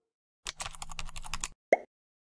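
Motion-graphics sound effects: a quick run of clicks, about ten a second, over a low hum for about a second, then a single short pop near the end.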